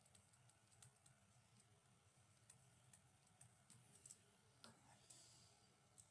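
Near silence with faint, irregular computer keyboard clicks, a few keystrokes at a time.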